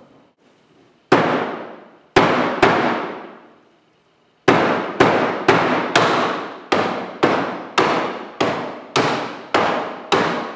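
Hammer striking a wooden dresser drawer: three separate blows, then steady hammering at about two blows a second. Each blow rings on and dies away in a reverberant room.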